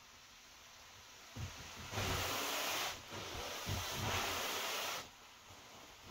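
Wind gusting: a rushing noise with irregular low buffeting on the microphone, rising about a second and a half in and coming in two long surges before dropping off near the end.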